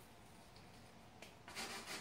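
Faint room tone, then a small click and a paintbrush rubbing and scraping across the oil-painted canvas during the last half second.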